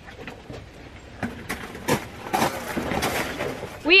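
A bicycle being wheeled over gravel: tyres crunching, with a few sharp knocks and rattles from about a second in.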